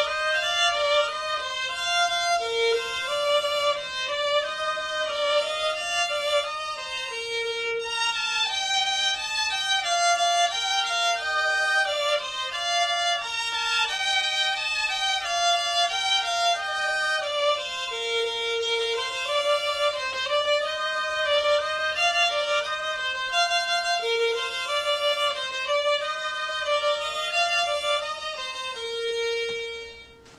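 Two young boys playing a violin duet: one plays a melody with vibrato while the other plays repeated held lower notes. The piece ends on a long held note near the end.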